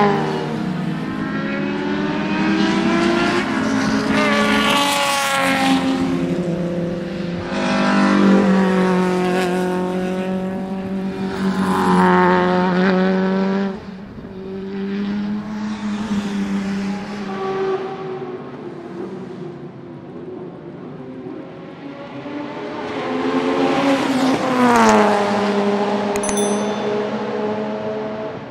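Mercedes-Benz CLK DTM (C209) race car's naturally aspirated 4.0-litre AMG V8 at racing speed, its revs rising and falling repeatedly through upshifts and downshifts over several shots. Near the end it comes up loud and passes close with its pitch dropping sharply.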